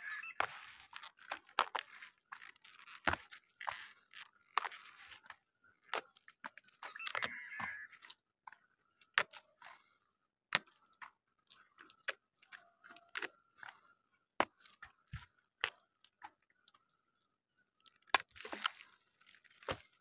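Crisp outer leaves being snapped and torn off a cabbage head by hand: scattered sharp cracks with short crunching, tearing runs, the longest run near the end.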